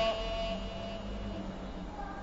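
The tail of a man's held recitation note fading away through the repeating echo of a sound system, then a faint steady electrical hum in the pause between phrases.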